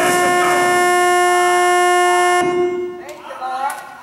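A loud, steady held note, rich in overtones, that cuts off suddenly about two and a half seconds in, followed by voices in the last second.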